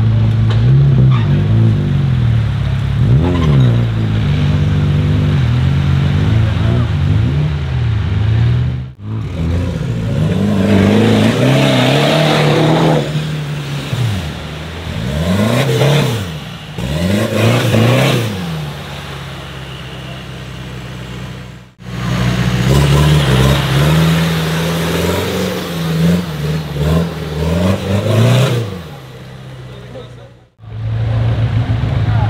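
Off-road 4x4 engines revving hard through deep mud, several sharp rises and falls in engine pitch, with the rushing noise of spinning tyres throwing mud.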